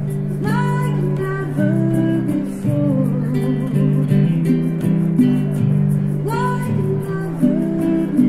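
Live acoustic band music: acoustic guitar strumming with hand percussion, held notes and a melody line gliding between pitches.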